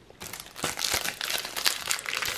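Foil wrapper of a Panini Adrenalyn XL trading-card pack crinkling as it is handled and opened at the top. A dense crackle of many small clicks starts about a quarter second in.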